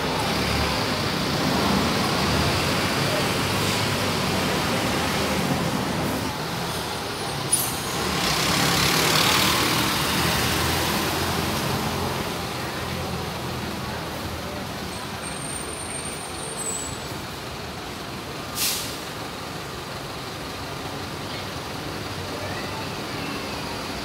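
Diesel city buses running at close range, with a long air-brake hiss about eight seconds in and a short sharp burst of air near nineteen seconds. The engine rumble is heavier in the first half, then fades as a bus pulls away.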